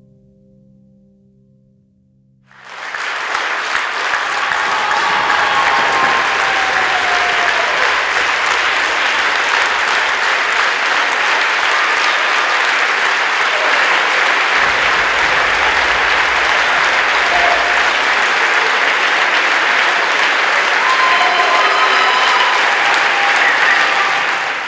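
A large theatre audience applauding. The applause comes in suddenly about two and a half seconds in, over the fading tail of a low held musical note, and then carries on steadily.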